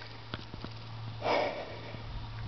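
A man's breathing as he catches his breath after being chased and stung, with one loud breath about a second and a quarter in and a few faint clicks before it.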